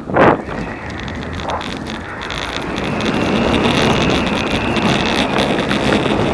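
Wind buffeting a chest-mounted GoPro's microphone: a steady rushing noise that grows louder from about two seconds in, with one brief louder burst just after the start.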